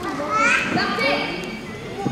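Children's voices in a large sports hall, with one high-pitched call rising in pitch and loudest about half a second in.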